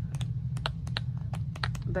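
Pages of a scrapbook paper pad being flipped quickly, a rapid run of light paper ticks, about seven a second.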